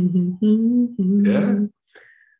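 A man humming a tune in a few short held notes.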